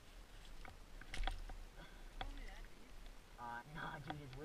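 Boots crunching and shifting on packed snow: a few separate short crunches, the loudest a little over a second in. A man's voice starts near the end.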